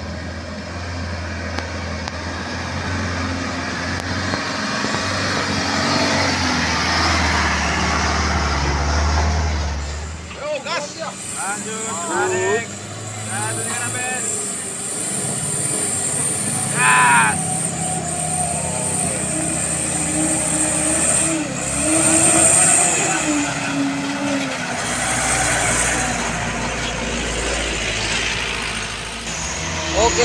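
Heavy diesel truck engines running at low speed as trucks crawl through mud. The deep rumble drops away suddenly about ten seconds in and comes back near the end, with people's voices now and then.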